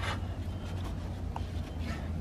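Halyard rope rustling and rubbing as it is wrapped around a cleat at the mast and made fast with a locking figure of eight, with a few faint ticks over a steady low rumble.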